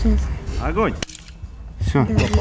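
A single shot from a sniper rifle firing a blank cartridge: one sharp crack about a second in.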